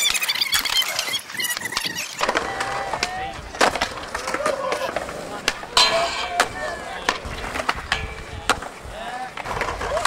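Skateboards on a concrete skatepark: wheels rolling, with sharp pops and board slaps. About six seconds in, a board slides along a flat metal rail and the rail rings.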